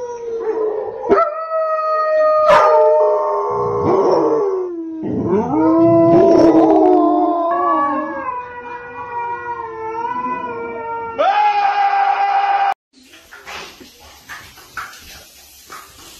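Dog howling in long, drawn-out howls whose pitch wavers up and down, sometimes with more than one howl at once. The howling cuts off suddenly about 13 seconds in, and quieter running water in a small tiled room follows.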